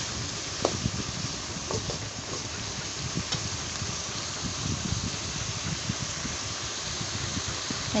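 Chopped onions and curry leaves sizzling in hot oil in a steel kadai, with a perforated steel skimmer stirring and scraping against the pan, a few light taps now and then. The onions are sautéing toward golden brown.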